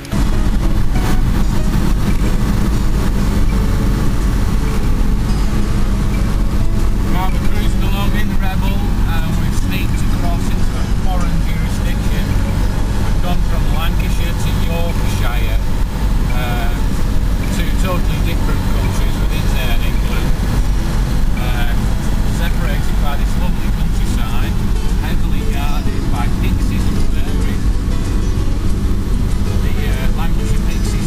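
Reliant Rebel saloon's engine and road noise heard from inside the cabin while driving, a loud, steady low drone throughout.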